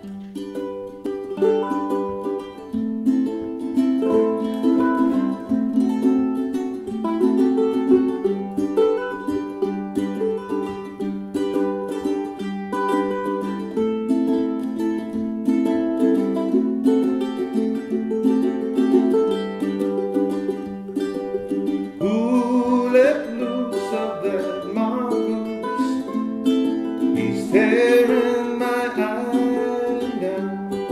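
Two ukuleles playing the instrumental introduction to a song, a steady strummed accompaniment under a picked melody.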